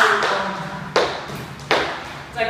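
Dance shoes striking a wooden floor: three sharp stamps, the first and loudest right at the start, the others about a second in and near the end, each with a short room echo.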